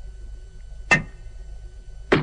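A sharp swishing strike that sweeps quickly down from high to low, heard once about a second in. It is one of a slow, even series repeating roughly every 1.2 seconds, over a low steady hum.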